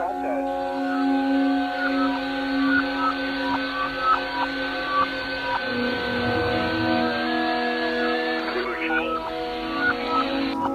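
Shortwave receiver audio from the 20-metre amateur band: band hiss with sustained whistling tones and short pitched blips, blended into ambient drone music. The held tones step lower about halfway through.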